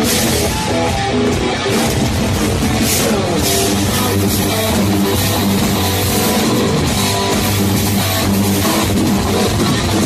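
Loud hard rock music: electric guitar over a drum kit, an instrumental passage with no singing.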